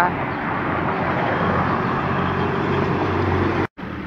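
Steady street traffic noise of a passing motor vehicle, cut off suddenly near the end.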